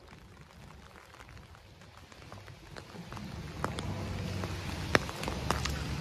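Light rain falling on wet pavement, with a few sharp drip-like ticks and footsteps on the wet asphalt; it grows louder from about halfway.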